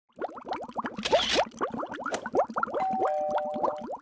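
Cartoon bubble sound effect: a rapid stream of short, rising, bubbly blips. A brief hissing burst comes about a second in, and a short steady two-note tone sounds under the bubbles near the end.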